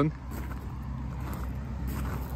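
BMW 435d's 3.0-litre twin-turbo straight-six diesel engine idling with a steady low rumble.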